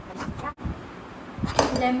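Metal lid clinking against a ceramic bowl and plate as it is lifted off and set down, with a sharp clink about a second and a half in.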